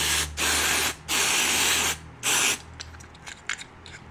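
Aerosol electronic contact cleaner sprayed in about four short hissing bursts into a motorcycle handlebar switch housing, to flush out dirt. This is followed by a few faint clicks as the housing is handled.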